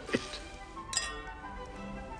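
Two wine glasses clinking once in a toast, about a second in, the glass ringing on briefly. Soft background music plays under it.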